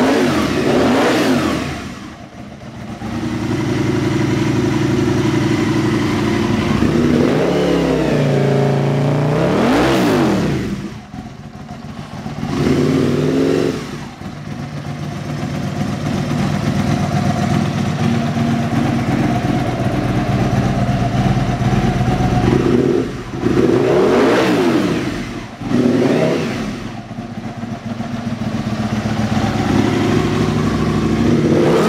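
2000 Aprilia RSV Mille's 998 cc 60-degree V-twin engine idling, revved in several short throttle blips that rise in pitch and fall back to idle.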